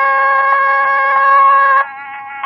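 Nadaswaram, the double-reed Carnatic wind instrument, holding one long steady note in raga Devagandhari; the note breaks off near the end, leaving a fainter steady drone tone.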